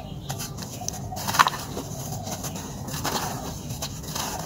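Hands crumbling and squeezing clumps of damp red dirt in a plastic tub, a gritty crumbling and crackling. A chicken clucks in the background, loudest about a second and a half in.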